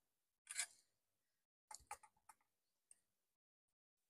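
Faint clicks and light knocks of a circuit board and a resistor's wire leads being handled: one short sound about half a second in, then a quick cluster of small clicks near the middle.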